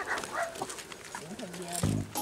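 A dog barking in short calls.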